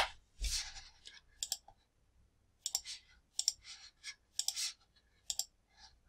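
Scattered clicks of a computer keyboard and mouse, some single and some in quick pairs, with short quiet gaps between them.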